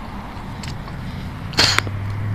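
A low steady hum with one short, sharp crack or snap about one and a half seconds in.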